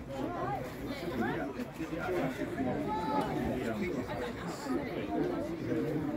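Indistinct chatter of football spectators, several voices talking over one another with no clear words.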